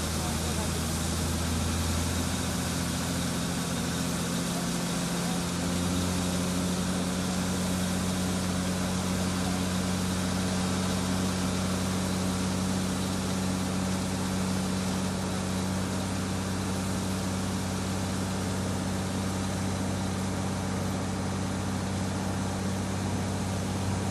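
Tata SE 1613 tipper truck's diesel engine running steadily at low revs as the loaded truck creeps along, with a steady hiss over it. The low engine note shifts briefly about four seconds in, then settles again.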